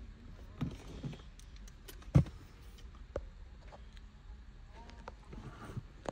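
Quiet background hum with a few faint clicks and knocks, the loudest a single sharp knock about two seconds in.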